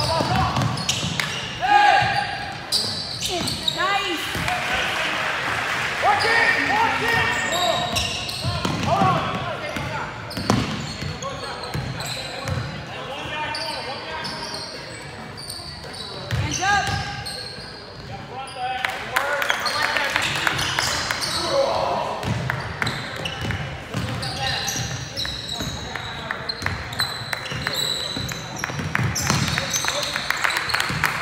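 Basketball being dribbled on a hardwood gym court, with a run of short bounces, under players' and spectators' voices calling out throughout.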